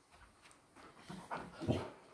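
Siberian husky giving a few short, quiet vocal sounds about a second in: his 'talking' protest at having his collar put on.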